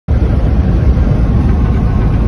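Steady road and engine noise heard inside a car cruising at expressway speed: a loud, even low rumble.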